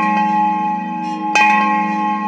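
Bell-like struck tones in intro music: one ringing on from a strike just before, and a second strike about a second and a half in, each ringing on with several steady pitches.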